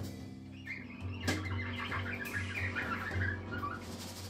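A free-improvised jazz group playing live: the double bass sounds low notes, with a sharp drum or cymbal hit about a second in. Above them runs a high, wavering, chirping line.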